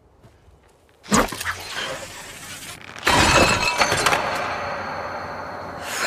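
Glass and junk crashing and shattering, set off by a tripwire strung across the ground. A sharp crash comes about a second in, then a louder, longer clattering crash from about three seconds that slowly dies away.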